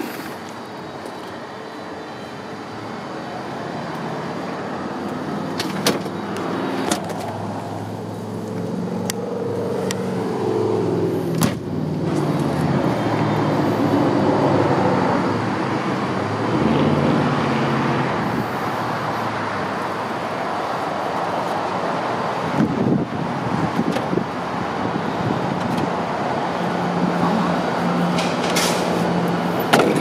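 Motor-vehicle engine and road traffic running in the background as a steady low hum. It grows louder over the first dozen seconds and then holds steady, with a few sharp knocks in the first half.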